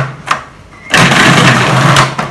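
Magimix food processor motor starting about a second in and running at full speed, its blade mincing raw chicken thigh with seasonings. Before it come a couple of sharp clicks as the lid is fitted on.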